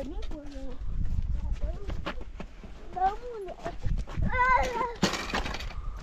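Children's high-pitched voices calling out, with crunching footsteps and scuffs on loose stony ground. About five seconds in there is a brief, loud rush of noise.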